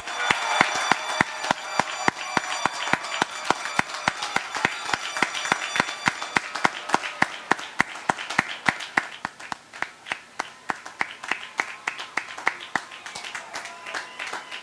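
A large outdoor crowd applauding, with sharp, fast claps from someone close by standing out above the rest. The applause gradually dies down.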